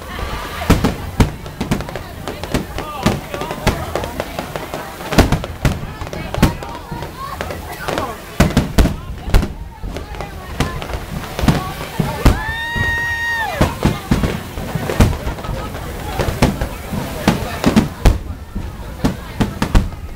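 Fireworks display: a rapid, irregular series of bangs and booms going off throughout.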